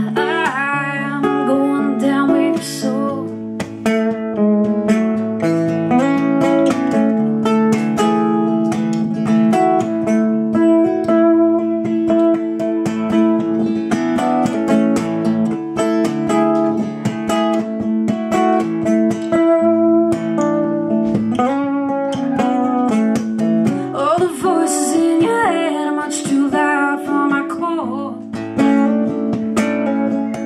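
Electro-acoustic guitar played live in an instrumental passage with fast, rhythmic strumming, a dense run of sharp string strokes over ringing chords.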